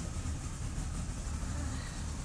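A 40 hp outboard motor running steadily at cruising speed, pushing a small boat along.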